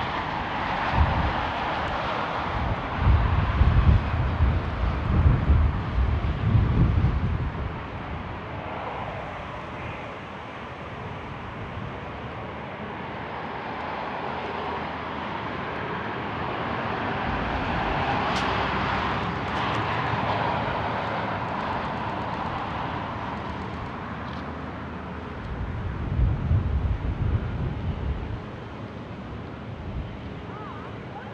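Airbus A350-900's Rolls-Royce Trent XWB engines running at taxi power as the airliner rolls slowly past, a steady jet rush and whine that swells about two-thirds of the way in. Irregular low rumbles come in the first seconds and again near the end.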